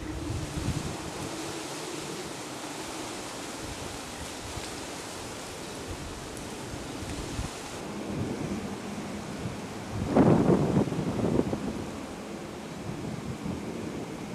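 Wind rushing over the microphone in a steady noisy hiss, with a louder burst about ten seconds in.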